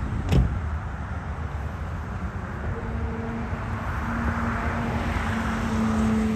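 A car door shuts with a single knock, then a car's engine hum and road noise run on, growing slowly louder toward the end.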